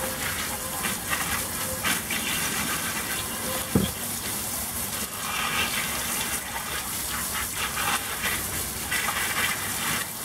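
Water from a garden-hose spray nozzle hits a cast iron Dutch oven and splashes onto a plastic tarp as the vinegar-loosened rust is rinsed off. The hiss swells and fades as the spray moves over the pot. There is a single thump about four seconds in.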